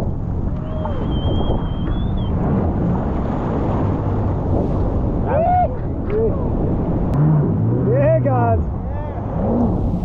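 Loud, steady rush of breaking surf and wind on the microphone, with people hooting and shouting briefly about five seconds in and again about eight seconds in.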